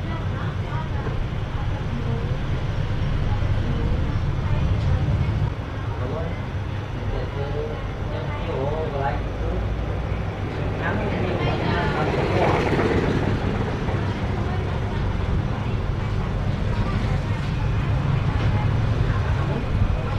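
Steady low background rumble with indistinct voices, loudest about twelve seconds in.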